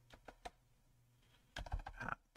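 Computer keyboard being typed on: a few separate keystrokes at first, then a quick run of keystrokes near the end.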